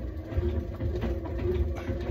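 Elliptical trainer in use: a low, uneven rumble under a faint steady hum.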